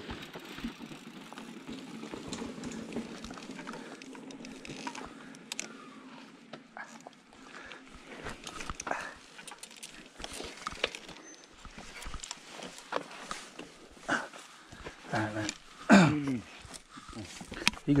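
Handling noise on a helmet-mounted action camera: scattered clicks, knocks and rustles as the helmet and gear are handled, with faint voices and a short louder voice near the end.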